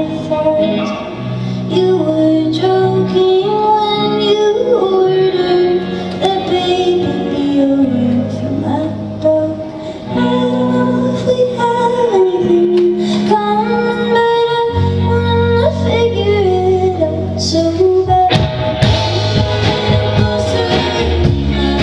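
Live indie rock band playing: a woman singing over acoustic guitar, electric bass and drums.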